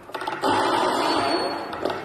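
Tall double doors being swung open: a rasping, noisy sound that starts about half a second in and fades away over about a second.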